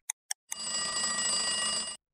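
Two last ticks of a countdown clock, then a bell ringing steadily for about a second and a half and cutting off suddenly. It is the time's-up signal ending a timed exercise.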